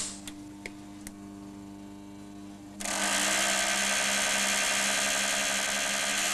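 A click, then a low steady hum; about three seconds in, a loud harsh buzz starts abruptly and holds steady: a car ignition coil and contact breaker firing high-voltage sparks to light gas-filled tubes.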